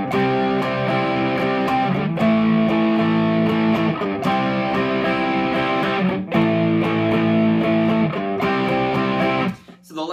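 Electric guitar (a Les Paul-style solidbody through a Mesa Boogie amp and Marshall cabinet) strumming a B5 power chord and a D chord in rhythm, tuned down a whole step. The chords change about every two seconds, and the playing stops just before the end.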